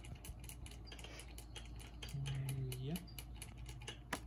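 A brief low hummed vocal sound from a person, rising in pitch at its end, over faint scattered clicks and ticks.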